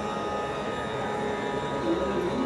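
A steady sruti drone: many sustained fixed pitches hold the tonic under the music. Near the end, a soft sliding melodic line of Carnatic ornamentation begins over it.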